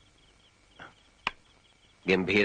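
Faint, steady chirping of crickets, with one sharp click a little past the middle.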